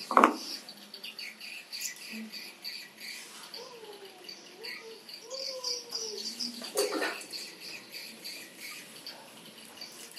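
Continuous small high-pitched chirping, with a sharp knock right at the start and another about seven seconds in.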